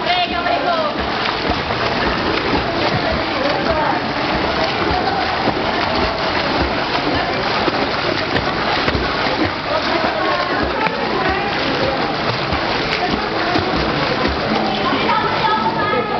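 Several swimmers splashing hard through a pool in a race: a steady wash of water noise, with voices of onlookers calling out over it.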